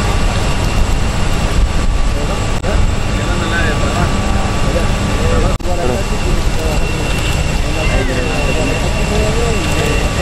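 Running power-plant machinery in a thermoelectric plant's yard: a loud, steady roar with a thin, steady high whine over it. The sound cuts out for an instant a little past the middle. Faint voices sit under the roar.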